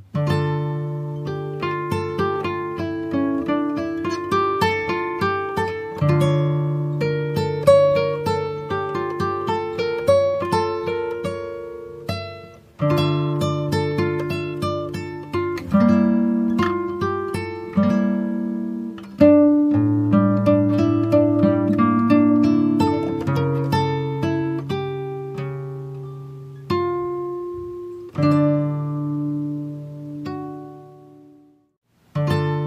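Background music: an acoustic guitar picking a quick run of notes over low bass notes, with a fresh strong chord every several seconds.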